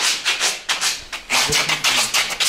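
Close-up rustling and scuffing of clothing and shoes as people step through a doorway onto a hard floor: a rapid run of short, dry scrapes, several a second.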